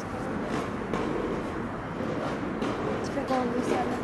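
Indistinct conversation of people talking, over a steady background hiss.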